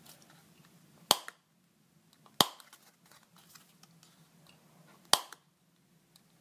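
Hand-held hole punch snapping shut three times as it punches holes through cardstock earring cards: a sharp click about a second in, another a second later, and a third near the end, each with a short metallic ring.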